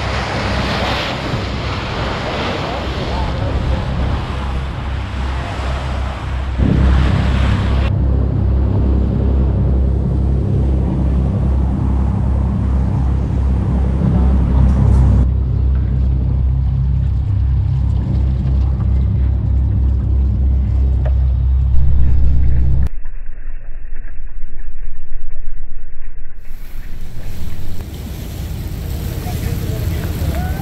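Boat engine running with a low, steady rumble, under wind on the microphone and rushing water, in several clips joined by abrupt cuts.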